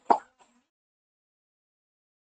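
One last short burst of a woman's laughter right at the start, then dead silence.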